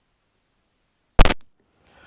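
Dead silence from a microphone dropout, broken about a second in by a single sharp, loud pop, a glitch in the mic signal as the sound cuts back in.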